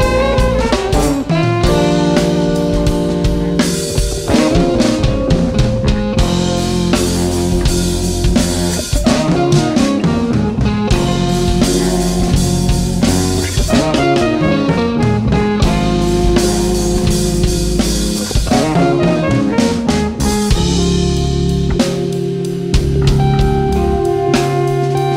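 Live rock-jazz band playing an instrumental passage: drum kit, electric guitar and electric bass, with a trumpet.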